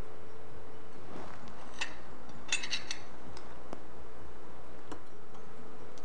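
A few light clinks and taps of a metal tea strainer and teaspoon against a china teacup and saucer, the clearest a short ringing clink about two and a half seconds in.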